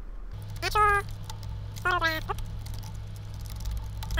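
Light clicking of computer keyboard keys as text is typed, with a man's voice sounding briefly twice and a steady low hum underneath.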